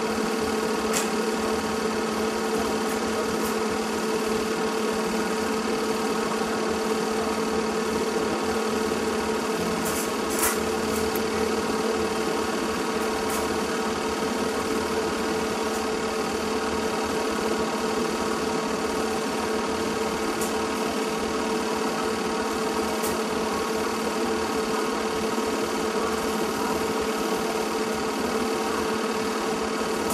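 Film projector running: a steady mechanical whirr with a constant hum that does not change, and a few faint ticks.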